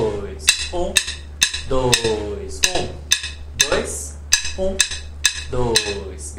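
Wooden drumsticks clicked together in a steady pulse, about two sharp clicks a second, marking the beat of a samba phrase. A man's voice sounds the rhythm of the phrase between and over the clicks, with a faint steady low hum underneath.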